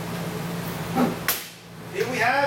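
A steady low hum with two sharp clicks a little over a second in.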